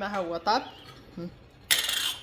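A sharp metallic clink with a brief ring near the end, as the stainless steel kettle on the gas hob is handled. Brief speech comes before it.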